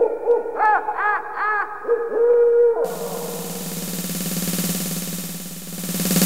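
Breakdown in a Goa trance track: the kick drum drops out, leaving a held synth tone with three short rising-and-falling synth calls about a second in. Then a swelling noise sweep over a steady low drone builds back toward the beat.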